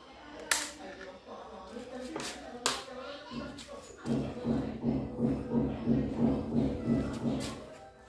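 A 1984 Honda XL125S's air-cooled single-cylinder four-stroke engine catching about four seconds in and running unevenly with a pulsing beat, about two to three pulses a second, for roughly three and a half seconds before it stops. This is an early attempt to start a restoration engine. Before it come a couple of sharp metallic knocks.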